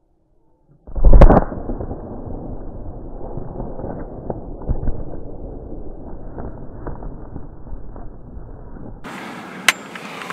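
A single loud shotgun blast about a second in. It is followed by the shot wild turkey gobbler flopping and beating its wings on the ground for several seconds, a run of irregular thumps and flapping.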